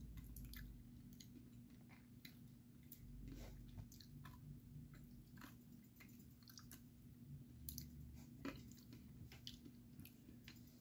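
Faint chewing of a chewy gummy Nerds Rope candy, with many small, scattered wet mouth clicks.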